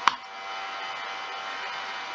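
Steady background hum and hiss with a few faint constant tones, and one short sharp click right at the start.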